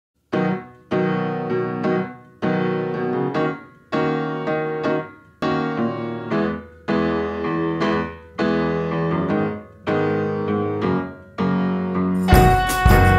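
Background music: a piano playing a slow run of struck chords, about one a second, each ringing and fading before the next.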